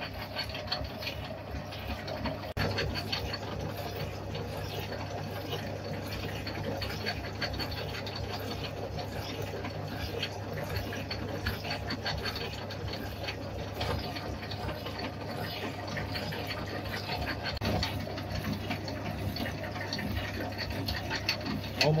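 Vintage metal shaper running steadily, its ram driving the cutting tool through a half-millimetre clean-up pass across an angle-iron workpiece, over a steady low motor hum.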